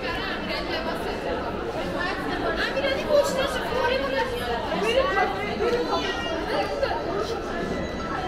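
Several people chatting close by, their voices overlapping, in a busy shopping-mall corridor.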